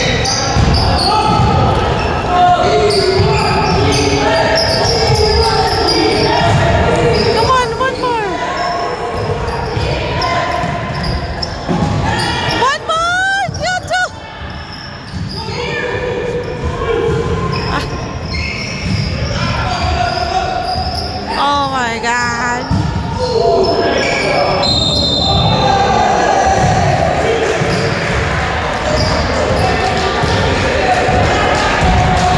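Basketball game in a gym: a ball dribbling and bouncing on the hardwood floor, voices calling out, and a few sharp shoe squeaks around the middle, all echoing in the large hall.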